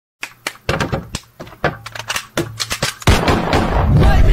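A string of sharp, irregular knocks and clicks, two or three a second, then a loud thud about three seconds in, followed by a dense, continuous rush of sound.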